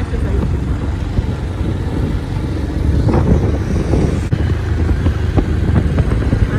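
Motorcycle riding at road speed: a steady low engine and road rumble with wind buffeting the microphone.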